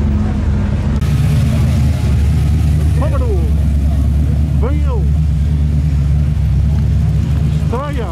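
Car engine idling with a steady, deep low rumble, with people's voices calling out twice in the middle.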